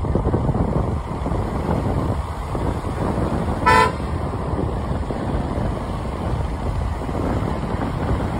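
Steady low rumble of wind and road noise on the microphone while moving. About four seconds in, a vehicle horn gives one short toot.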